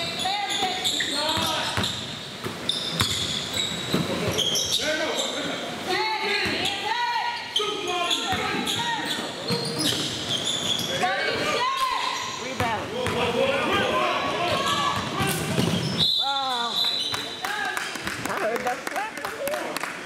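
Basketball game on a hardwood gym floor: the ball bouncing and being dribbled, with short high sneaker squeaks and indistinct players' voices, echoing in a large hall.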